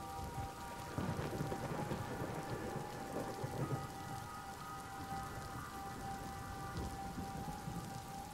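Soft steady rain with a low rumble of thunder that swells about a second in and fades over the next few seconds, under a few faint held tones.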